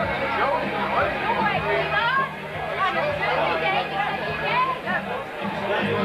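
Crowded pub full of people talking at once, a steady hubbub of overlapping voices with no single speaker standing out, over background music.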